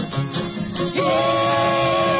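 Country-style song with plucked guitar. About halfway through, voices start a long held "Yeee" of the chorus's "Yeee-haw" rebel yell.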